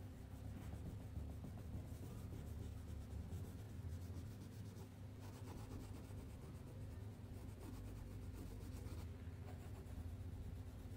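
Crayon scribbling back and forth on paper as an area is coloured in: a faint, continuous scratchy rubbing over a steady low hum.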